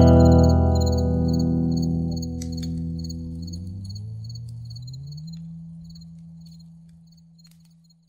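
A band's closing chord ringing out and slowly fading to silence at the end of a rock song. A low note slides upward about halfway through, and a faint high pulsing chirp sounds over the top.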